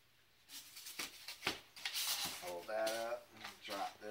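Hands handling foam-board airframe parts and their servo wiring: rustling scrapes and a few sharp light knocks as the foam pieces are fitted together.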